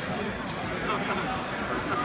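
Indistinct chatter of several voices talking over one another, with a short sharp knock about half a second in.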